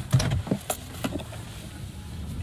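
Low, steady rumble inside a moving car's cabin, with a few short clicks and knocks in the first second.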